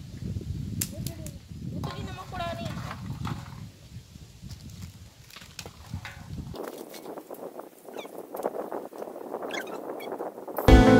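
A voice in short snatches over wind rumble on the microphone; from about two-thirds of the way through, a plastic packet wrapper crinkling as it is handled.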